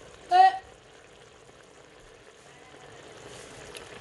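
A pot of thick chilli sauce boiling hard, a faint steady bubbling. A short vocal sound about a third of a second in is the loudest thing.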